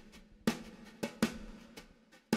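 Drums playing a sparse beat with no vocals, about four sharp hits in two seconds, each ringing briefly.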